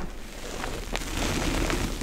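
Hands squeezing and crushing powdery gym chalk: soft crumbly crunching and powder rustling, with a sharper snap about a second in and denser crunching after it.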